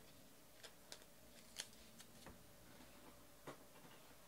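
Near silence with a handful of faint, sharp clicks and taps as trading cards and their plastic holders are handled and set down.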